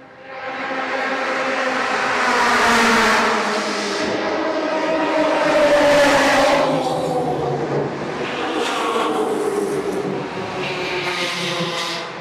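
Race car engines running loud, swelling twice, with the pitch falling about halfway through, as of cars going past.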